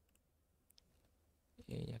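A few faint computer mouse clicks, then a short spoken word near the end.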